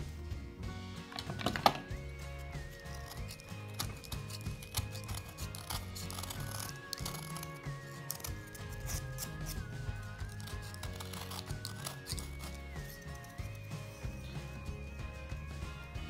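Background music with a steady bass line and a wavering high melody, over faint clicks and scraping of a utility knife shaving high-density polyurethane foam.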